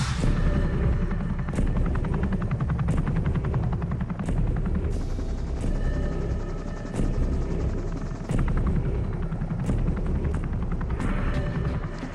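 Helicopter rotor chop, a rapid steady beat, heard from inside the aircraft, under a dramatic film score with a heavy hit about every second and a half.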